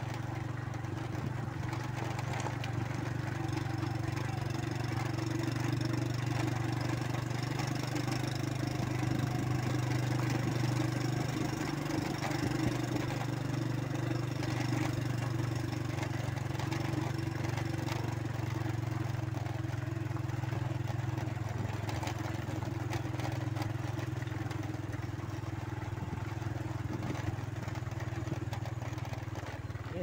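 Motorcycle engine running at an even cruising speed while riding a rough dirt track, a low drone holding one pitch, with road noise over it.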